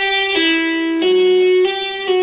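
Clean electric guitar playing a slow legato phrase of pull-offs and hammer-ons on the B string, moving between the 8th, 5th and 7th frets. A few ringing notes follow one another, each held about half a second.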